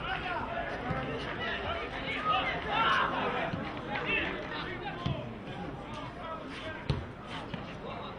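Players' shouts and spectators' chatter around a football pitch, with a few dull thumps of the ball being kicked, the sharpest about seven seconds in.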